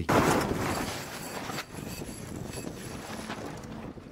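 Wind and water rushing out on open water. The sound is an even noisy haze, loudest in the first second, then easing to a steadier, lower level.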